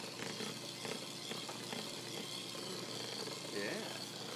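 Electric hand mixer running steadily, its beaters churning a thick ice cream mixture in a plastic bowl, with scattered light ticks.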